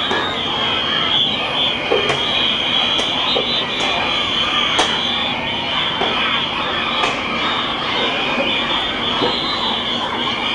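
A large group of children's voices shouting and chattering together, many high voices overlapping into a continuous din, with scattered sharp clicks.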